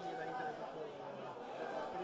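Faint stadium ambience of distant voices chattering, heard in a pause in the commentary.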